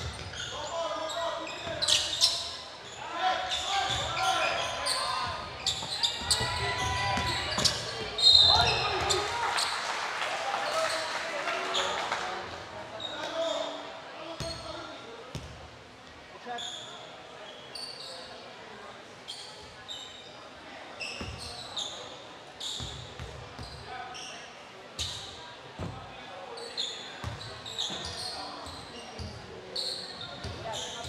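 Indoor basketball game in a reverberant gym: a ball bouncing on the hardwood floor, sneakers squeaking and players and spectators shouting. A short shrill referee's whistle sounds about eight seconds in, and after it things are quieter, with occasional dribbles and voices.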